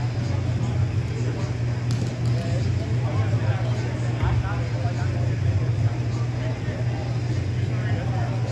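Steady low hum filling a large indoor sports hall, with distant, scattered voices of players over it and a couple of faint clicks about two seconds in.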